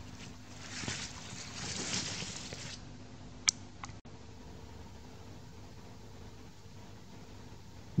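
Leaves of a chili pepper plant rustling as a hand moves the foliage, then a sharp click followed by a fainter one. The rustle stops abruptly about four seconds in, leaving only a faint steady hum.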